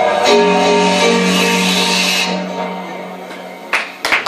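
Live synthpop band's synthesizers holding a final low chord that fades out as the song ends, with a sharp click near the end.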